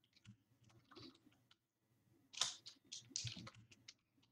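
Typing on a computer keyboard: faint, scattered keystrokes, with a quicker, louder run of key clicks past the middle.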